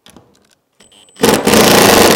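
Cordless drill driving a screw into the drawer front: a few light handling clicks, then the motor runs loud for about a second, starting a little past halfway.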